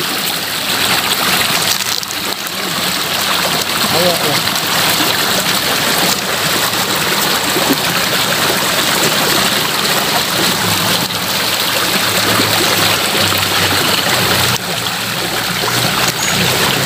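Steady rushing of water flowing in a small irrigation ditch.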